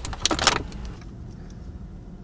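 Steady low rumble of a moving car's cabin, with a quick cluster of clicks and rubbing in the first second as a phone is grabbed from the center console.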